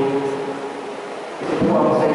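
A man's voice ringing on in a reverberant room, with a low rumble about one and a half seconds in.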